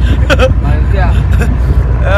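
A man laughing briefly over a loud, steady low rumble of wind and engine on the open deck of a moving boat.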